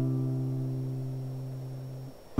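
A strummed acoustic guitar chord ringing on and fading away steadily.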